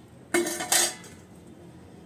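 Stainless steel plate clattering twice as it is handled and set down, with a brief metallic ring.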